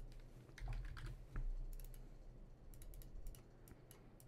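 Faint, irregular clicking of a computer keyboard and mouse, in small clusters, over a low steady hum.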